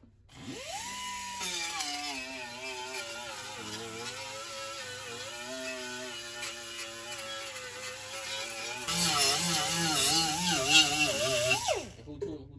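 Air die grinder with an abrasive disc spinning up to a high whine. Its pitch drops and wavers as the disc is pressed against the oil pan's gasket flange to strip old gasket material, and it grows louder and rougher about three-quarters of the way through. It spins down with a falling whine just before the end.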